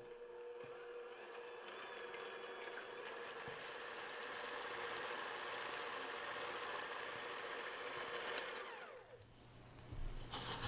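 Electric hand mixer whipping egg whites in a glass bowl: a steady motor whine with the wire beaters swishing through the whites as they foam. It winds down and stops about nine seconds in.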